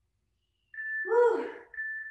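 A short vocal sound, set between two brief steady high tones, after a moment of silence.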